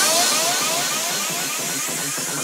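Psychedelic trance breakdown with the kick drum and bassline gone, leaving a thin synth texture of quick rising chirps that repeat and slowly fade.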